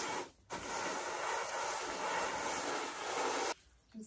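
Hot steam iron's soleplate rubbed round over table salt on newspaper, a steady gritty hiss that cuts off suddenly shortly before the end as the iron is lifted. The salt works as an abrasive, scouring limescale off the soleplate.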